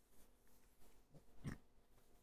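Near silence: room tone, with one faint brief sound about one and a half seconds in.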